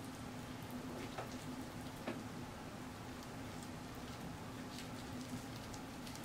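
Faint close-up chewing of a cheese-sauce-and-Hot-Cheetos-coated turkey leg, with a few soft wet clicks, over a steady low hum.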